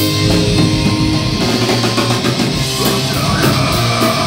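Live heavy metal band playing loudly: distorted guitar and bass over a drum kit, with cymbals struck on a steady beat.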